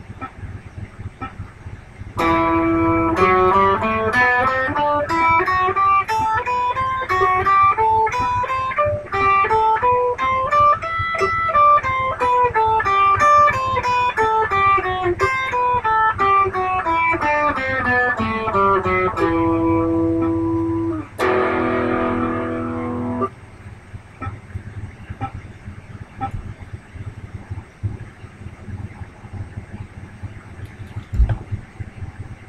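Electric guitar picking single notes at about two a second, climbing a scale and then descending it, followed by a held note and a chord that rings for about two seconds and stops. A faint metronome click ticks underneath and is heard on its own before and after the playing.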